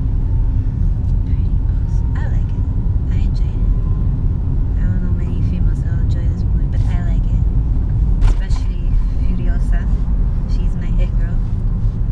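A car being driven, heard from inside the cabin: a steady low rumble of engine and road noise.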